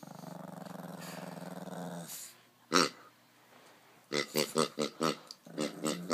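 A pug growling steadily at a rubber pig toy for about two seconds. It is followed by one loud short call a little under three seconds in and a quick run of short, sharp calls over the last two seconds.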